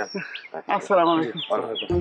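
Small birds chirping with short, falling chirps, several times over, alongside a man talking.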